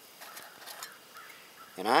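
Faint handling and scraping of a small round metal pellet tin as its lid is taken off.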